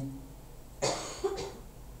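A man coughs once, suddenly, about a second in.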